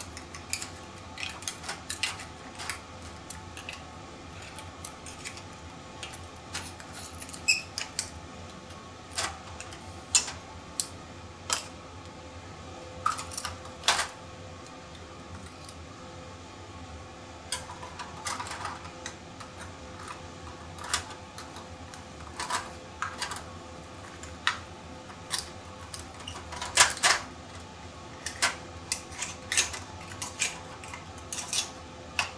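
Oysters in the shell grilling on a gas cassette grill: scattered sharp pops and crackles from the heating shells and juices, with the loudest cluster near the end.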